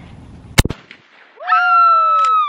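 A single shotgun shot about half a second in, fired at a thrown clay pigeon that it breaks. About a second later a loud, high-pitched excited yell starts and is held.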